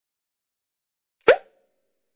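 A single sharp pop a little over a second in, surrounded by dead silence.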